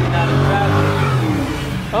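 Dodge Charger 392 Scat Pack's 6.4-litre HEMI V8 running under way, heard from inside the cabin; the engine note rises slightly and then eases off about a second and a half in.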